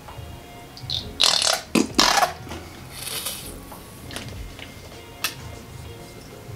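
Squeeze bottle of acrylic paint sputtering and spitting air as thick paint is forced out onto plaster of Paris powder: a cluster of short wet bursts between about one and two and a half seconds in, a softer hiss near three seconds, and a single click later.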